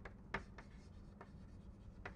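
Chalk writing on a blackboard: faint taps and scratches, two clear strokes near the start and fainter ones after, over a steady low hum.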